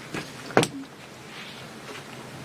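Desk handling noise: two short knocks in the first second, then faint steady room noise.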